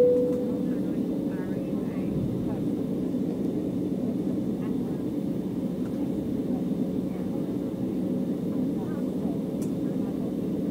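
Steady cabin drone inside an Embraer 195 jet as it taxis. It opens with the lower note of a two-tone cabin chime, which fades out within the first half-second.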